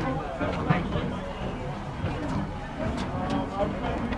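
Indistinct voices of people talking, not close to the microphone, over a steady low background rumble.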